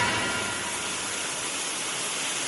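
A shower running behind the curtain: a steady hiss of spraying water.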